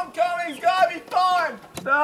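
A young man singing in short phrases, unaccompanied or with any guitar too faint to stand out.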